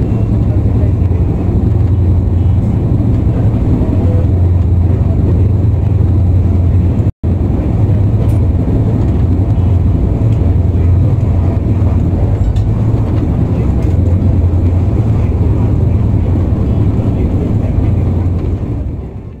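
Steady low rumble of a Swarna Shatabdi Express coach running at speed, heard from inside the train, broken by a momentary dropout about seven seconds in.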